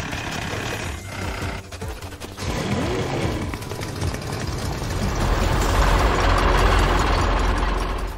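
Cartoon vehicle sound effects over background music: a small vehicle driving off, then a plane flying past, with a rushing noise and low rumble that grows louder in the second half.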